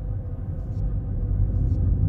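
Low rumbling drone at the close of a heavy metal song, swelling steadily louder, with a faint steady hum above it and a faint tick about once a second.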